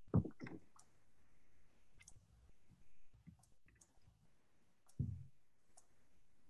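Faint, scattered clicks of a computer mouse while screen sharing of a slide presentation is set up. Two louder, duller thumps come just after the start and again about five seconds in.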